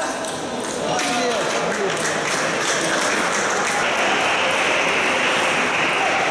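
Table tennis ball being hit back and forth in a rally, sharp clicks off the bats and table about a second apart, over the voices of spectators in the hall.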